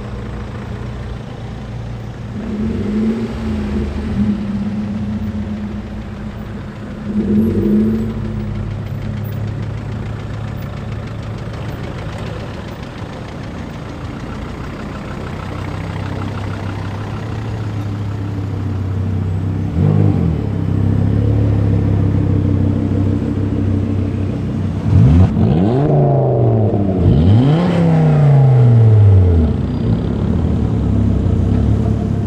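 A procession of Volvo cars driving slowly past, engines running at low revs. Short rev blips come now and then, with a quick run of several near the end, the loudest part.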